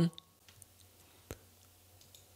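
A single sharp computer mouse click just over a second in, over a faint steady low hum.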